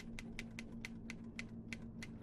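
Manual typewriter keys clacking in quick, uneven strokes, about six a second, over a faint steady low hum.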